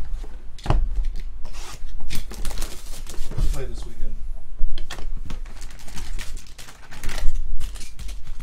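Cardboard trading-card hobby boxes being handled on a rubber mat: a box is slid out, opened and its foil packs tipped out, with a run of irregular knocks, taps and scrapes.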